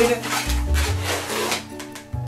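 Latex modelling balloon squeaking and rubbing as it is twisted by hand into segments, over background music.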